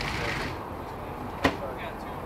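A single sharp click about a second and a half in, against faint voices in the background.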